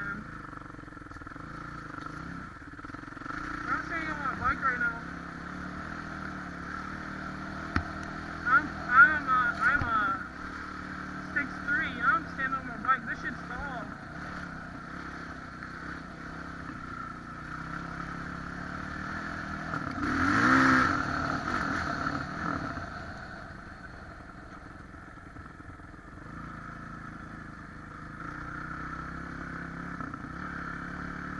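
Kawasaki 450 dirt bike's single-cylinder four-stroke engine running under way, revved up and down again and again, with the loudest surge about two-thirds of the way through.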